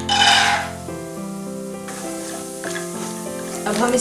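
Raw peanuts going into hot oil in a kadhai. There is a loud sizzle in the first second, then quieter sizzling as they are stirred with a wooden spatula, under instrumental background music.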